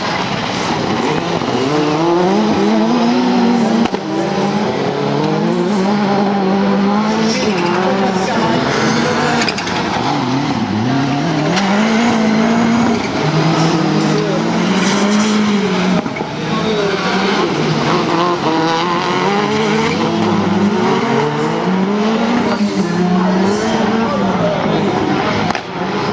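Touring autocross race car engines racing on a dirt circuit, the pitch repeatedly climbing as they rev and dropping back at each gear change or lift, with several cars overlapping.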